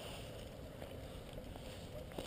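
Faint, steady low rumble of wind on the camera microphone.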